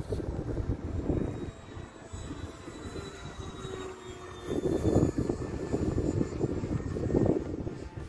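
E-flite Habu STS electric ducted-fan RC jet flying overhead: a faint high whine that falls slowly in pitch as it passes. Wind gusts on the microphone come in from about halfway.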